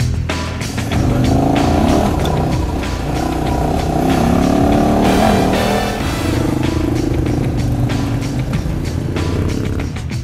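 KTM 1190 Adventure R's V-twin engine revving up and down, pitch rising and falling repeatedly as the bike rides a dirt track, from about a second in. Background music plays under it.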